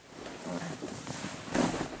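Rustling and scuffing of a gi and a body turning on the mat and against the padded wall, growing louder, with a louder rushing burst a little after halfway.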